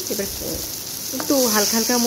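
Cubed papaya and ivy gourd (telakucha) leaves sizzling steadily in hot oil in a wok, stirred and scraped with a wooden spatula.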